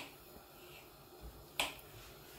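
Kitchen knife cutting through a peeled banana and knocking on the countertop: two sharp clicks, one at the start and another about one and a half seconds in.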